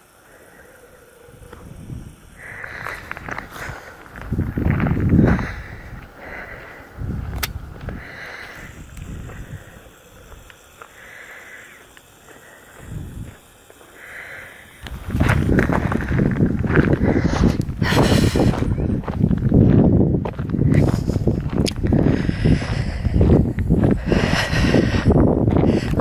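Outdoor wind noise on the microphone, uneven and moderate at first, then loud and steady from about halfway through.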